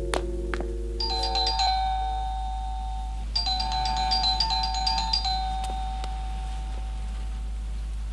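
An apartment's electric doorbell ringing twice: a short ring about a second in, then a longer ring about three and a half seconds in, each a fast run of repeated metallic strikes. The film's soft instrumental music fades out during the first ring.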